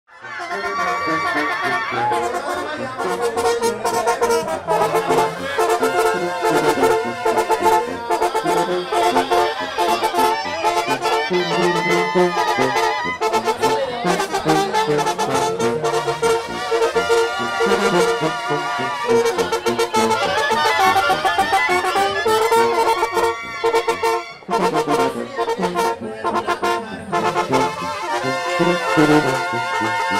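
Brass band music: trumpets and trombones playing a tune, with a short break about 24 seconds in.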